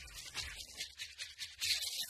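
Techno DJ mix in a breakdown: the kick drum has dropped out, leaving a rhythm of hissing, noisy hi-hat and percussion hits, about four a second, that grows louder near the end as the track builds back to the full beat.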